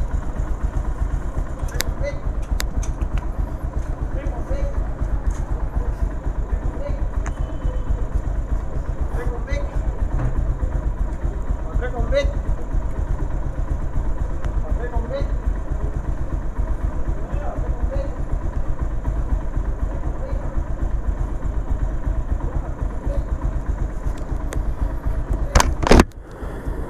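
Bajaj Pulsar 220F's single-cylinder engine idling steadily, with a sharp click near the end.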